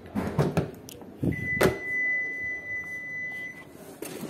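Hyundai Aura's rear door being handled and opened, with a few knocks and a sharp latch click. Then the car's alarm sounds one steady high-pitched beep lasting about two and a half seconds, beginning just over a second in and stopping shortly before the end; it is an alarm that switches itself off.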